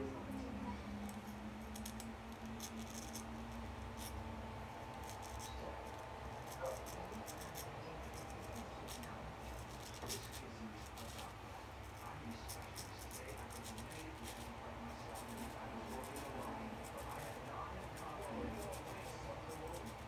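Diamond Edge square-point straight razor scraping through lathered whiskers on the upper lip and chin, in many short strokes.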